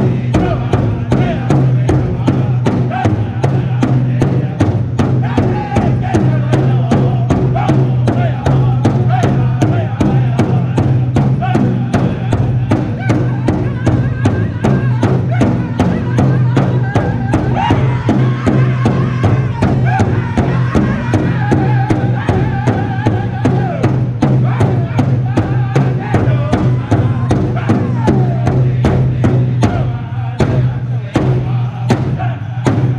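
A powwow drum group singing in unison while striking one large hide-covered drum together with sticks in a steady, even beat. High voices rise and fall over the drumming.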